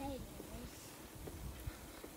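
A faint voice trails off near the start. After that there is only a quiet low rumble of wind and tyres from a bicycle rolling along a paved trail.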